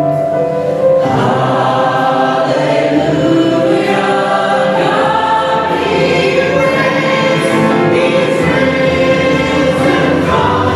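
Worship song sung by a church choir and lead singers with a band of piano, drums and guitars; the full band comes in about a second in.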